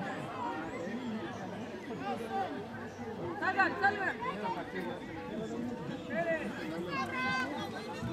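Several people's voices talking and calling out over one another on a sandy playing field, with louder shouts about three and a half seconds in and again near the end.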